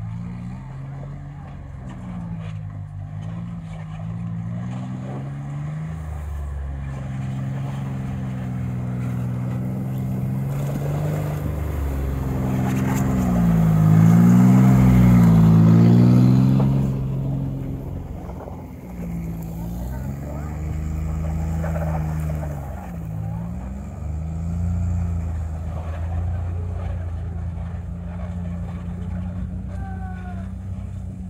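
Tracked all-terrain vehicle's engine running, its pitch rising and falling as the driver works the throttle to crawl across bog. It grows loudest as the vehicle passes close by about halfway through, then eases off as it moves away.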